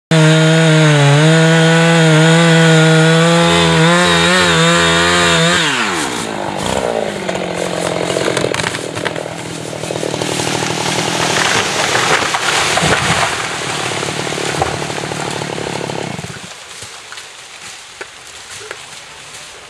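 Chainsaw running at full throttle in the back cut of a red oak, then throttled down with a falling pitch about six seconds in as the tree starts to go. This is followed by some ten seconds of cracking, snapping wood and breaking branches as the oak falls through the neighbouring trees and hits the ground, stopping abruptly near the end.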